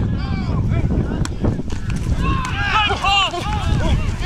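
People shouting during open play, the shouts growing louder and busier about halfway through, over steady rumbling wind noise on the microphone.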